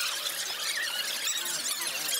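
Many quick, overlapping high-pitched chirps and squeaks, with the low market background gone.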